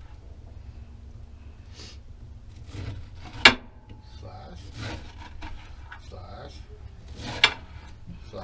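A kitchen knife slicing down through a peeled pineapple, rasping through the fruit as pieces are cut off around the core. Two sharp knocks come about three and a half and seven and a half seconds in.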